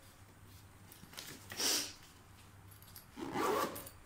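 A brief scratchy rustle a little before halfway, from items being handled in an open fabric suitcase.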